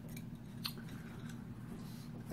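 Small plastic clicks and handling noise from a punch-needle embroidery pen being worked by hand to take its cap off and loosen its needle screw. Two short sharp clicks come within the first second.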